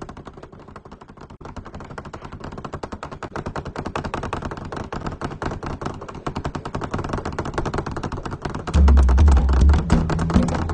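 Rapid cartoon-style rattling of a school desk and bench, many strikes a second, growing louder, as a pupil's jiggling leg shakes the seat. Bass-heavy music comes in near the end.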